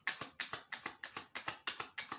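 A deck of tarot cards being hand-shuffled: a quick, even run of card slaps, about seven a second.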